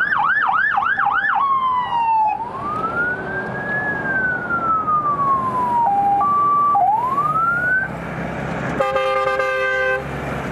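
Electronic fire-engine sirens: a fast yelp that slides down in pitch as the first truck drives past, then a slow rising and falling wail, a brief two-tone hi-lo and another rising sweep. A steady horn blast sounds for about a second near the end.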